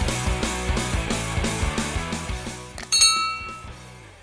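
Channel intro music with a fast, evenly repeating beat. About three seconds in it gives way to a bright ringing chime that fades out.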